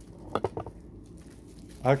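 A quick cluster of three or four sharp clicks and taps about half a second in, from handling a bubble-wrapped candle and a small pocket knife while unwrapping it.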